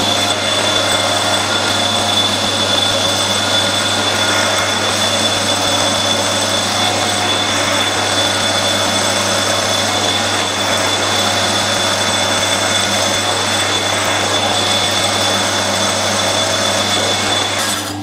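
Metal lathe running steadily while a 1/8 in twist drill bores a hole in a small mild-steel part: an even machine hum with a steady high whine over it. It stops suddenly just before the end.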